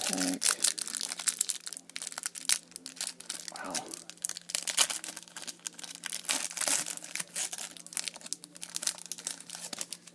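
Clear plastic wrapper of a football trading-card pack crinkling in dense, irregular crackles as it is handled and pulled open by hand, over a faint steady low hum.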